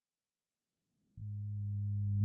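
Silence for about the first second, then a steady, flat-pitched low hum from a text-to-speech voice, growing slightly louder and running straight on into the next synthesized word.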